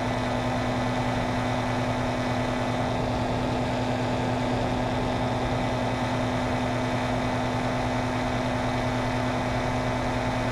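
Paramotor engine and propeller running at a steady throttle in flight, a constant drone that holds the same pitch throughout.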